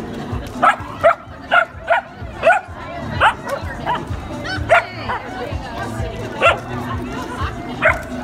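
Puppy barking repeatedly in short, sharp, high yips, about two a second for the first five seconds, then twice more near the end.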